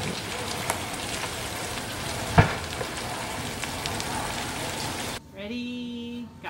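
Large fire burning: a steady crackling hiss with scattered pops and one loud sharp crack a little over two seconds in. Near the end the sound cuts off suddenly to a single held pitched note lasting about a second.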